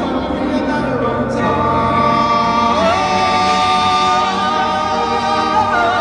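Singing: voices with choir-like backing, the lead stepping up about three seconds in to hold a long note, then singing a note with wide vibrato near the end.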